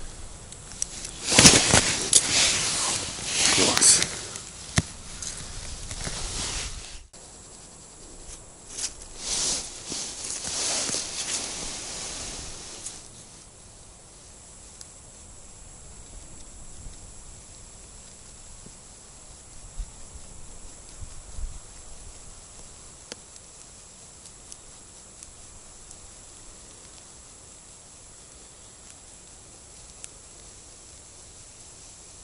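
Loud rustling and handling noises in the first half, as a freshly caught perch is unhooked and the small ice-fishing rod is taken up again, then only a faint steady hiss from about thirteen seconds in.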